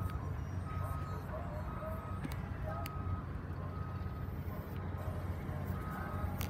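A car's interior warning chime sounding over and over, one short tone about once a second, over a steady low rumble, with a couple of light clicks.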